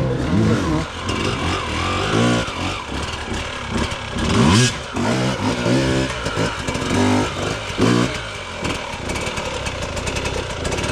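Enduro dirt bike engine revving hard in repeated bursts, the pitch rising and falling several times as the bike climbs a steep, muddy bank.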